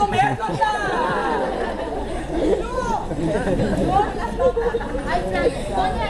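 Several people talking over one another: overlapping chatter with no single voice standing out.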